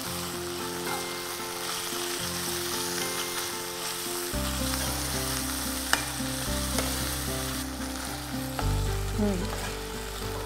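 Chicken keema with onions and kasuri methi sizzling as it fries in a non-stick pan, stirred with a metal spoon, with a single sharp tap about six seconds in. Soft background music with held chords plays underneath.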